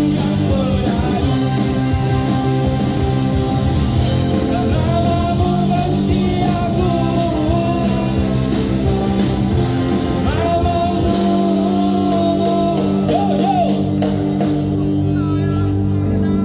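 Live ska band playing: a horn section of trombone, trumpets and saxophone over electric guitars, bass guitar and drums, with a voice singing.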